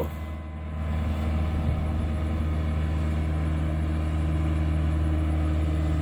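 Compact tractor towing a compost topdresser, its engine running at a steady, even pitch.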